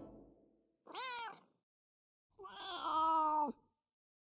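A cat meowing twice: a short meow about a second in, then a longer one.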